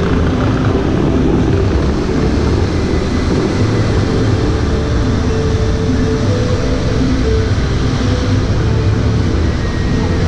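Bellagio fountain's water jets spraying and falling back onto the lake: a loud, steady rushing roar with a deep rumble, which wind on the microphone makes rougher.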